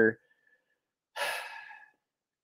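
A man's short, breathy exhale, like a sigh, about a second in, fading away within under a second.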